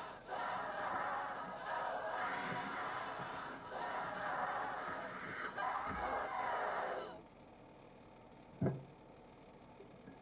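A woman's harsh, growling demonic screams in about four long bouts, acted as a possessed woman, breaking off suddenly about seven seconds in. A single thump follows near the end.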